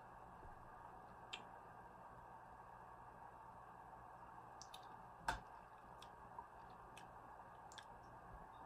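Near silence: quiet room tone with a few faint clicks, the sharpest one about five seconds in.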